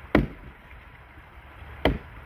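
Two strokes of a small axe biting into a dead log, sharp and loud, the first just after the start and the second near the end.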